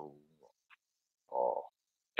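A man's voice trails off into a pause of about a second, then makes one short, low vocal sound like an 'oh'.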